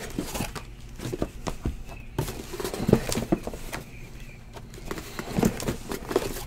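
Shrink-wrapped boxes of trading cards being handled and set down one on top of another: a scatter of soft knocks with handling noise in between.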